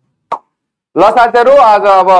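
A man's voice: a single short mouth sound about a third of a second in, then speech from about halfway through.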